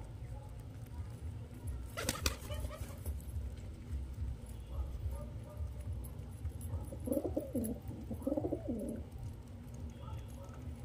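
Domestic pigeons cooing: two low, wavering coos about seven and eight and a half seconds in, over a steady low rumble. A single sharp click comes about two seconds in.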